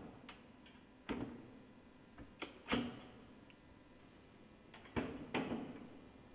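A few faint, separate metal clicks and knocks of rigging hardware: a quick-release locking pin being handled and pushed home in the front link joining a d&b flying frame to a subwoofer.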